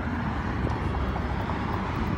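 Outdoor city street noise picked up by a phone microphone while walking: a steady low rumble of traffic and wind, with no distinct events.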